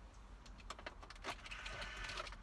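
A few faint plastic clicks and light rustling as a GMT800 instrument cluster is handled and worked into its dashboard opening.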